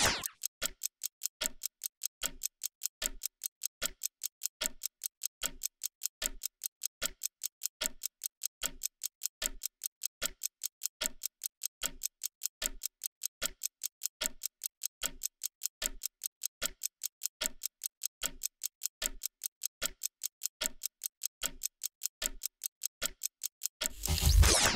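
Ticking-clock sound effect counting down a 30-second timer: a steady, even run of ticks, several a second.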